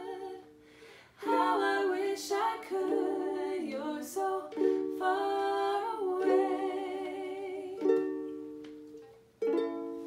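Ukulele strumming chords, dropping out briefly just after the start, ringing down near the end, then striking a fresh chord.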